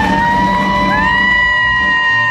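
Live country band playing on stage, holding a sustained high note that slides up about a second in and is held over the band.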